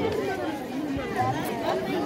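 Market chatter: several people talking in the background, with no single voice standing out.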